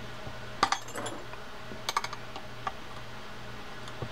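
A 10 mm wrench clicking against the handle nut and metal handle of a Shimano TLD 10 lever-drag fishing reel as the handle is fastened: a few light metallic clicks in small clusters, about half a second in and again about two seconds in, over a faint steady hum.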